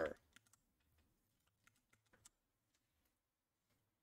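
Near silence: room tone with a few faint, short clicks in the first half.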